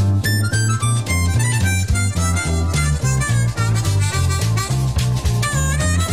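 Instrumental break in a jazz-blues song: a harmonica plays the lead line, with bent notes, over a bass line moving note by note and drums.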